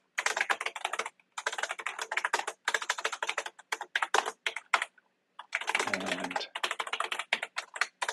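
Fast typing on a computer keyboard: runs of quick key clicks, with a pause of about half a second about five seconds in.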